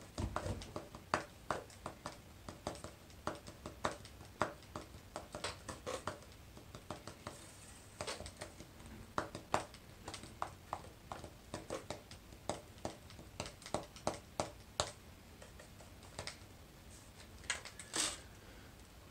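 Fingers tapping and fretting on the neck of an electric bass guitar that has no strings, giving a stream of dry, irregular clicks and taps instead of notes, with a short lull near the end.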